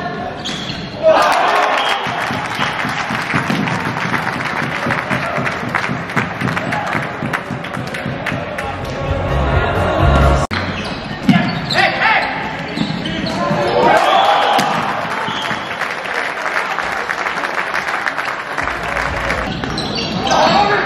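The echoing noise of a floorball match in a sports hall: shouting from players and spectators over the sharp clacks of sticks and the plastic ball on the court and boards. The noise jumps suddenly to a loud burst about a second in, and there is a brief break near the middle where the footage is cut.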